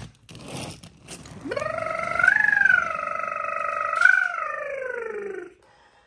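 A person making a vehicle-engine noise with their voice while playing with toy cars. The sound slides up, holds steady for about three seconds, then slides down and stops.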